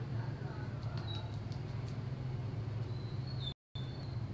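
A steady low hum throughout, with faint light ticks and two short high squeaks, one about a second in and one near the end. The audio cuts out for a moment near the end.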